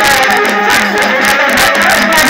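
Loud, amplified live gondhal devotional music: a woman sings a wavering melody into a microphone over fast, dense strokes of a sambal drum.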